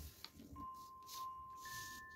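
Sheet of paper being folded and smoothed by hand: a couple of light taps at the start, then two soft crinkling rustles in the second half. Quiet background music with held chime-like notes plays under it.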